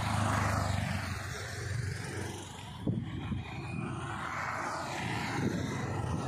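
A motorcycle engine passing close by on a road, loudest at the start and then easing off, over steady outdoor traffic noise. There is a single knock about three seconds in.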